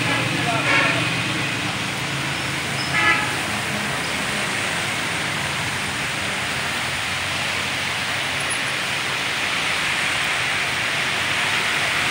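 Heavy rain falling steadily on a road: a continuous hiss, with the tyres and engines of passing cars and motorcycles in it. Two brief pitched sounds stand out, about a second in and about three seconds in.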